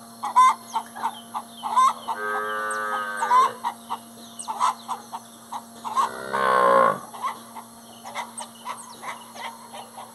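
Cattle bellowing: one long, loud call about six seconds in that drops sharply in pitch at its end, and an earlier drawn-out call around two to three seconds. Short clucking calls of chickens go on throughout.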